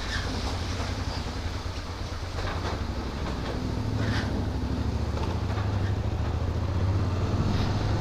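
Motorcycle engine running at low speed, a steady low drone that grows a little louder partway through as the bike pulls away.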